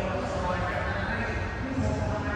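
Background hubbub of a crowd, many voices talking at once in a large hall.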